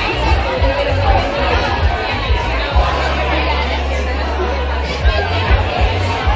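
Audience chatter fills a club venue while music plays over a steady low bass.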